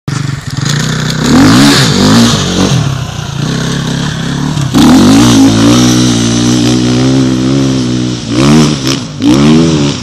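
Dirt bike engine revving as it accelerates away over rough ground: the note rises and falls with the throttle, with a long pull about halfway through and two sharp revs near the end.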